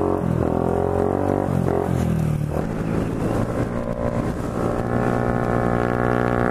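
Honda Ruckus 49cc scooter engine running as it rides off. Its pitch sags over the first couple of seconds and climbs again near the end as the throttle opens.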